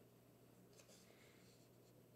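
Near silence: room tone with faint hiss and a couple of very faint ticks near the middle.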